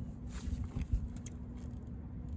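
Light clicks and rustles of gloved hands handling wiring and engine-bay parts around a fuel rail, over a steady low rumble and faint hum.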